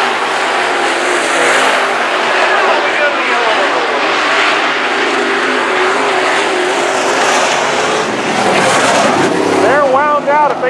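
Dirt-track modified race cars running laps, their engines rising and falling in pitch as they rev through the turns and pass by.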